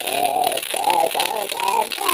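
Heavily filtered, warbling voice chanting four short syllables in quick succession, muffled so that its sound sits low and coos rather than speaks clearly.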